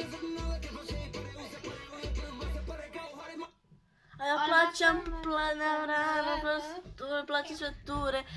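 A recorded song played back on a speaker: a beat with a pulsing bass. It cuts off about three and a half seconds in. After a half-second gap, music with a strong sung voice holding long, wavering notes starts.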